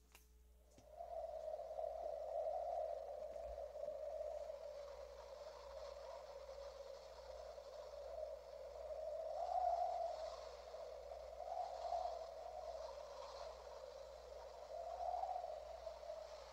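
A faint, sustained single tone that wavers slightly and swells several times, a drone laid under the video as background sound. It starts about a second in.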